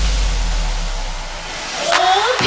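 Transition effect in an electronic dance mashup: a deep bass tone fading away under a wash of white noise, which dips and then swells again near the end.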